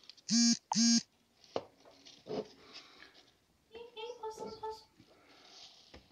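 Two short, loud, steady-pitched electronic beeps in quick succession, followed about four seconds in by a fainter, broken tone.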